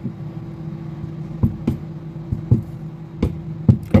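Wooden hammer handle tapping the inside of a dented aluminium Bang & Olufsen speaker grille: about six light knocks at irregular intervals, working the dent back out. A steady low hum runs underneath.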